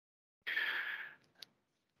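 A man's audible breath, lasting under a second, taken between sentences, followed by a faint mouth click.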